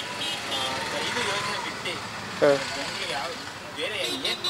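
Street ambience of passing traffic with faint background voices, and a man's short 'haan' about two and a half seconds in.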